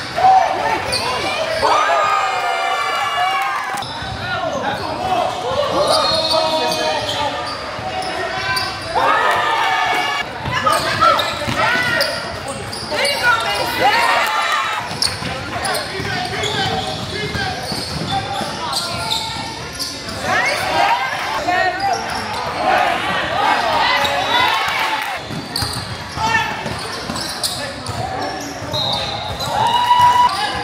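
Youth basketball game in a gym: a basketball bouncing on the court floor and players' shoes moving, under indistinct voices of players and spectators calling out, with the hall's echo.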